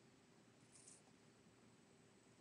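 Near silence: faint room tone with a low steady hum, and a brief faint hiss a little under a second in.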